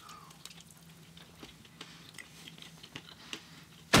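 Faint chewing of a Snickers Almond candy bar, with soft scattered mouth clicks over a low steady hum.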